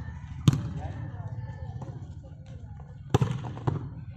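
Sharp smacks of a volleyball being struck by players' hands: one about half a second in, then two more about half a second apart near the end, over the voices of players.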